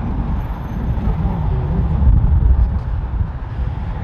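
Low, gusting rumble of wind buffeting the microphone, over the noise of street traffic.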